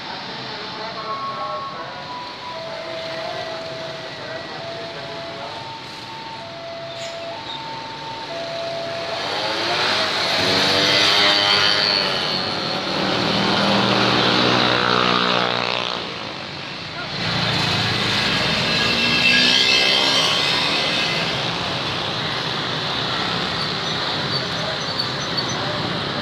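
Motorbikes and other road traffic revving up and passing close by as they pull away across a level crossing, in two loud waves with a brief dip between them. Earlier, a run of held tones switches back and forth between two pitches.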